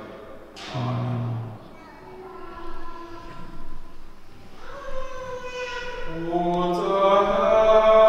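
A man's voice chants a short liturgical phrase, then several voices sing a slow liturgical chant that swells fuller and louder in the last couple of seconds.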